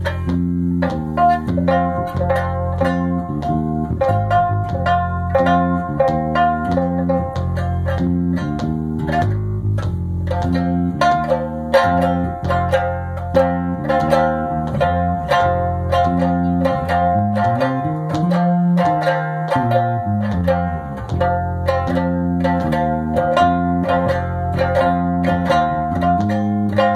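Electric bass guitar playing a moving bass line under a small round-bodied string instrument strummed over and over on one unchanging chord. Near the middle the bass slides down in pitch and back up.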